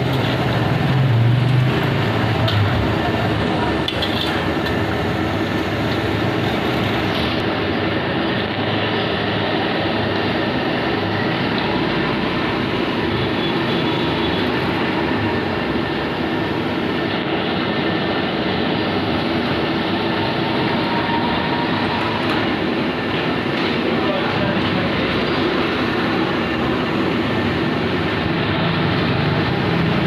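Oil sizzling steadily in an iron kadai as burger buns deep-fry, over a gas burner running beneath.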